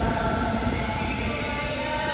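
Stadium concert rehearsal heard from outside: a steady held musical tone from the stadium's sound system carrying over the open plaza, over a low, even background rumble.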